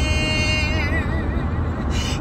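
A woman's voice holding the last sung note of "you're here", wavering into vibrato and fading out about a second and a half in, over a steady low rumble of car-cabin noise.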